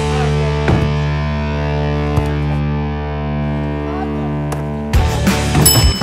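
Background music: a held, distorted electric guitar chord sustaining, changing to a busier passage with a few sharp knocks about five seconds in.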